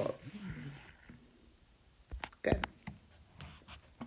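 Stylus on a tablet's glass screen while a box is drawn around an answer: a handful of short, faint clicks and taps, starting about halfway through and running until near the end.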